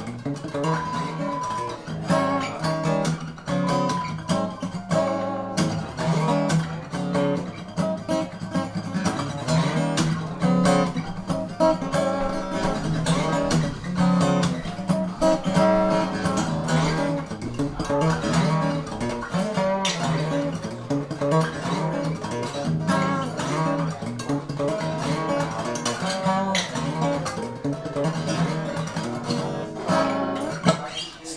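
Handmade Gardner steel-string acoustic guitar played unaccompanied: a continuous run of picked notes and strummed chords, ringing with no pauses.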